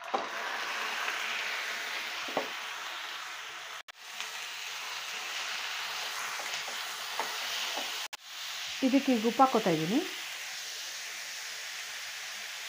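Raw chicken pieces frying in a hot pan with a steady sizzle, stirred and pushed about with a spatula. The sizzle cuts off briefly twice.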